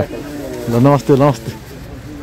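A man's voice in two short utterances about a second in, over faint street background noise.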